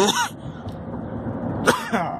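A man coughing twice, short and hoarse, about a second and a half apart, over the steady road noise inside a moving car; it is a lingering cough that won't go away.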